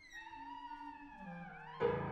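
Contemporary chamber ensemble music: several instruments slide slowly in pitch, with overlapping glides that fall and then rise. A sudden loud attack comes near the end.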